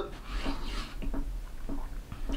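A man breathing hard while doing push-ups: a puffed breath about half a second in, with a few faint soft ticks as he moves.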